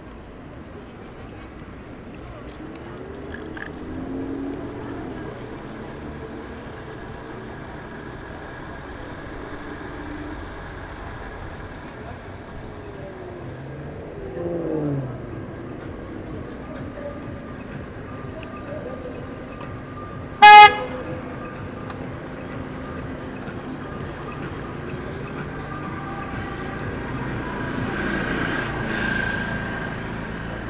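Street traffic noise heard from a moving scooter, with vehicles passing in slow rising and falling sweeps. About two-thirds of the way in, a single short, very loud horn toot is the loudest sound.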